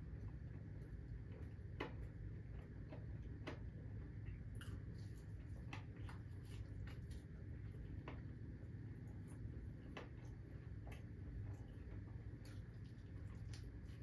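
Faint wet clicks and smacks of a person eating chicken wings by hand, pulling meat off the bone and chewing, in irregular single clicks over a steady low room hum.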